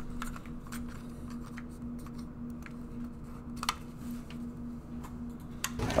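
Quiet background with a steady low hum and scattered faint clicks, one sharper click a little past halfway.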